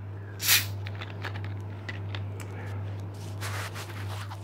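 Handling and rustling noise: a short, sharp hiss about half a second in, then faint clicks and rustles, over a steady low hum.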